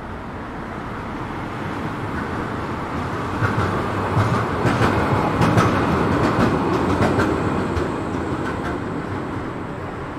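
Electric street tram passing close by on its rails: a rumble that swells to its loudest around the middle and then fades, with a run of clicks as the wheels roll over the track.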